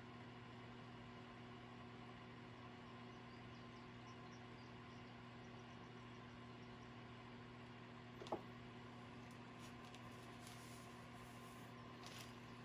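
Near silence: room tone with a steady low electrical hum, and one faint click about eight seconds in.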